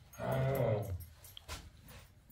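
A low, drawn-out vocal sound lasting under a second, followed about a second and a half in by a single click.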